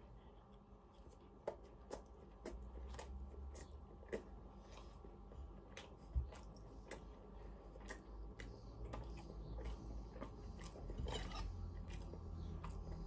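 Faint chewing of a mouthful of chicken and mushroom pastry slice, with soft irregular mouth clicks and smacks starting about a second and a half in.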